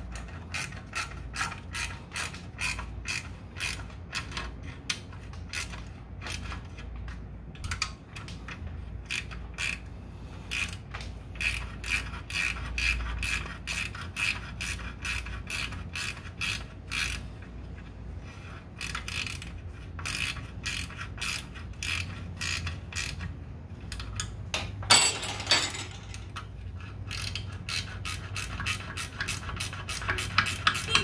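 Ratchet wrench clicking in quick, steady runs as the exhaust bolts of a scooter are turned, over a low steady hum. A brief, louder metallic clatter comes near the end.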